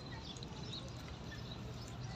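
Distant diesel locomotive approaching, heard as a faint, steady low rumble, with scattered short bird chirps above it.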